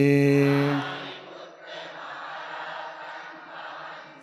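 A male Buddhist monk chanting a Sinhala-Pali homage over a microphone holds the last syllable of a line on one steady note for about the first second, then stops. The rest is a soft, even background hum without a clear voice, the pause before his next line.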